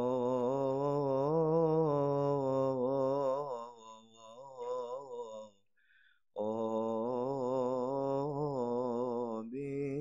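Male voice chanting a slow, ornamented Coptic liturgical hymn. Long melismatic notes waver in pitch, in two drawn-out phrases with a short breath about halfway through.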